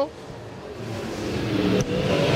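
Super late model dirt race car engine coming past the front stretch. It grows steadily louder as it approaches, its pitch rising slightly.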